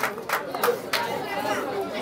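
Audience chatter: several people talking at once, none of them clearly.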